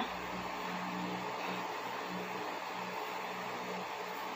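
Electric fan running: a steady whir with a constant low hum.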